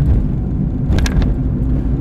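Steady low road and engine rumble of a moving car, heard from inside the cabin. A brief sharp click-like sound comes about a second in.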